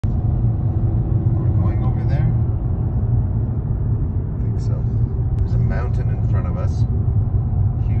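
Steady low rumble of engine and tyre noise heard inside the cabin of a moving car.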